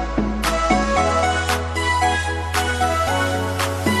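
Background music: a pop or R&B-style track with sustained bass notes that change every second or two, and a drum hit about once a second.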